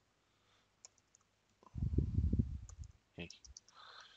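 Typing on a computer keyboard: scattered light key clicks, with a stretch of dull low thumping about two seconds in.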